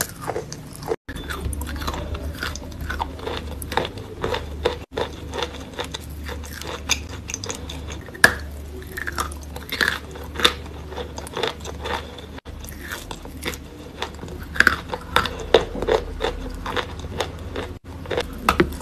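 Close-up crunching and chewing of lumps of wet chalk: repeated sharp bites and crunches mixed with moist mouth sounds. There are a few very brief breaks in the sound where clips are joined.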